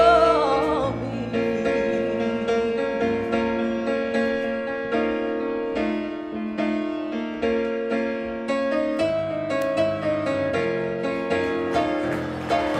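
A woman's held sung note with vibrato ends about a second in, and a Yamaha grand piano carries on alone with an instrumental passage of chords and melody.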